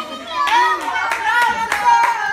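Scattered hand clapping mixed with children's voices, starting about half a second in after a brief lull.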